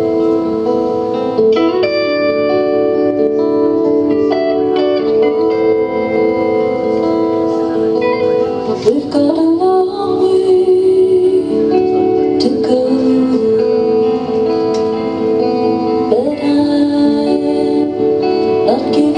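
A song played live on acoustic and electric guitar together, with held melody notes and a sliding rise in pitch a little before the midpoint.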